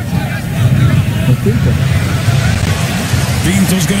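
Stadium crowd at a football match: a steady din of fans' voices, with faint chanting rising near the end.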